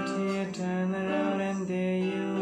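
A man singing long held notes of a pop song, with an electric guitar played along.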